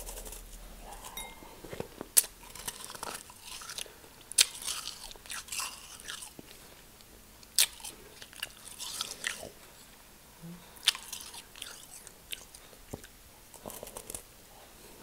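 Real snow from a packed, fluffy snowball being bitten and chewed close to the microphone: crisp crunches, with four sharp bites a few seconds apart and softer crackly chewing between them.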